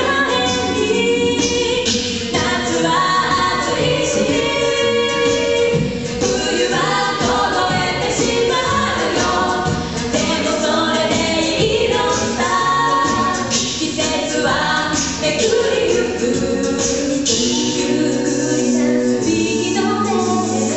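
An a cappella vocal group of mixed male and female voices singing in harmony without instruments, amplified through microphones.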